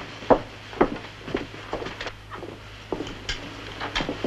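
Footsteps on a hard floor: a string of short, sharp steps, about two a second, over a low steady hum.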